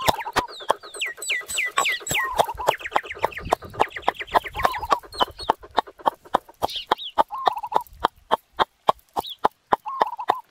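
Wooden pestle pounding garlic in a mortar: quick, steady, repeated knocks. Chickens cluck in the background, and a run of short falling chirps comes a second or two in.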